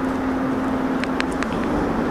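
A steady mechanical hum with a low droning tone that drops away about one and a half seconds in, with a few faint clicks around the one-second mark.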